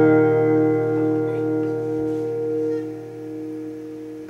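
A chord on an acoustic guitar left ringing, its held notes slowly dying away, with a further drop in level near the end.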